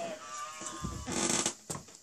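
Handling noise: fingers rubbing and brushing against the phone and the recording device, with a louder rustle in the middle and a couple of light clicks near the end. A faint murmured voice comes first.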